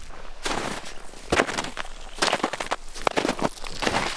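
Footsteps crunching in snow, roughly one step a second.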